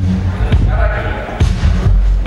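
Live blues band playing between vocal lines: a heavy bass line and drum hits, with an electric guitar phrase about halfway through.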